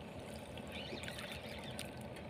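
Faint, steady wash of sea water around the boat.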